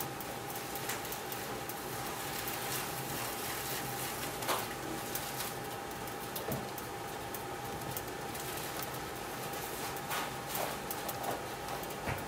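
Composite baseball bat being rolled by hand between the rollers of a bat-rolling press, giving a few scattered light clicks and creaks over a steady hiss and faint steady hum.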